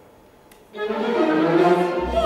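Live opera orchestra, led by bowed strings, coming in after a brief near-quiet pause about three-quarters of a second in. It plays sustained chords that swell in loudness.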